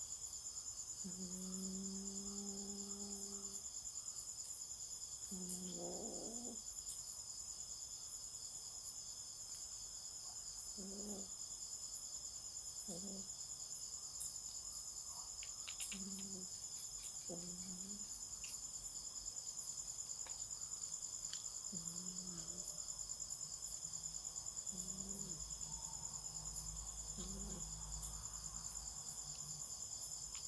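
A night-time chorus of crickets: a continuous, high, finely pulsing trill. Short, low-pitched calls recur every few seconds over it.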